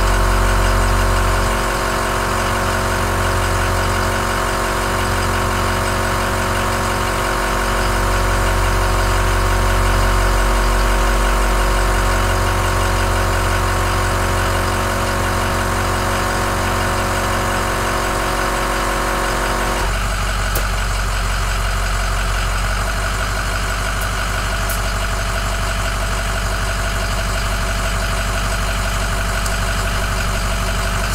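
Smittybilt 2781 12-volt air compressor running steadily while inflating a truck tire, over a truck engine idling. About two-thirds of the way through, the compressor's sound changes abruptly and part of its tone drops out, while the engine idle carries on.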